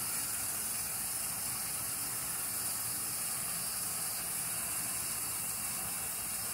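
A steady, even hiss with no other events.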